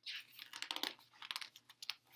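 A picture book's paper page being turned: rustling and crackling, with a run of crisp crackles through the turn.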